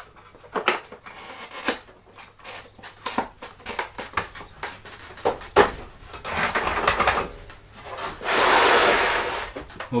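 Plastic clicks and knocks as the pump head of an Eheim Professional 3 canister filter is pressed onto the canister and locked down, with a longer rubbing, scraping sound of plastic near the end.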